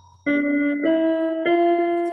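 Electronic keyboard played with a piano voice: three single notes in a rising step pattern, each held about half a second, the last one still sounding at the end.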